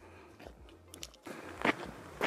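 Footsteps crunching on a gravel road, quiet and irregular, with a louder knock near the end.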